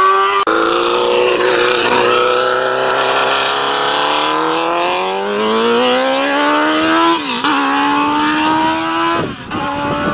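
Messenger MX1 F1000 race car's 1000 cc motorcycle engine at full throttle, pulling away down the road, its pitch climbing steadily through the gears. The note drops briefly at an upshift about seven seconds in and again just before the end.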